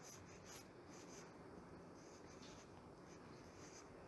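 Near silence: faint room tone with a few soft, brief scratchy sounds.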